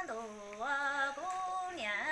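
A woman singing Hmong kwv txhiaj unaccompanied, a sad orphan's song. Her voice holds long notes, drops sharply at the start, steps up about half a second in, and slides back down near the end.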